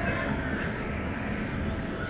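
Steady outdoor background noise: a low rumble with a fainter hiss, and no distinct event standing out.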